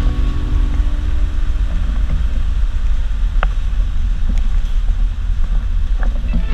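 City bus driving on a wet road, a loud steady low rumble of engine and tyre noise heard from inside the cab, with a brief high squeak about three and a half seconds in.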